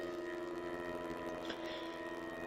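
Faint background music between spoken phrases: a steady drone of held tones.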